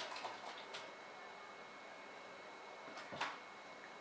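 Faint rustling of hands working in long hair as hairpins are pushed in to secure a rolled section, over quiet room tone, with one brief soft sound about three seconds in.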